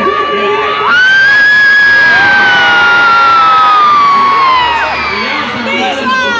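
Audience screaming and cheering in a hall; about a second in, a loud, sustained high-pitched scream rises above the crowd and slowly falls in pitch over about four seconds.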